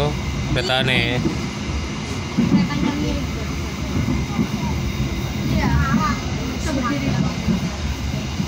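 Steady low rumble of a passenger train running, heard from inside the carriage, with short bursts of a child's voice over it.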